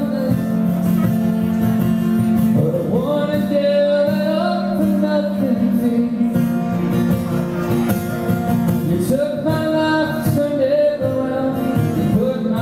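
Live solo performance: a man singing with his own guitar accompaniment, the guitar sounding steadily under sung phrases that come and go.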